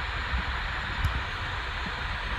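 Steady low background rumble and hiss, with one faint click about a second in.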